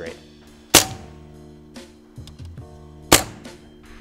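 Two sharp shots from an air rifle firing pointed pellets into a motorcycle helmet's visor, about two and a half seconds apart. The visor is not yet pierced.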